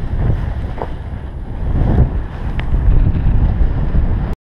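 Wind buffeting the camera microphone as a paraglider launches and lifts off, a loud low rumble that grows louder about halfway through.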